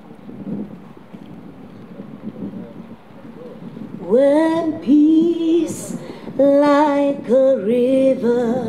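A woman singing solo, starting about halfway through with slow, long-held notes.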